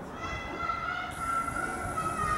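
A long, high call or shout from a distant voice, held for over a second with a slight fall in pitch at the end, over the background murmur of a football pitch.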